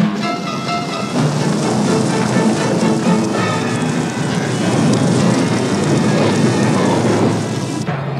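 A herd of caribou running past in a stampede, a dense, continuous rush of hooves like heavy rain or rolling thunder, with film music over it.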